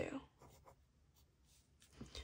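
Mechanical pencil writing on a paper workbook page: a few faint, short scratching strokes in the first second, then near silence.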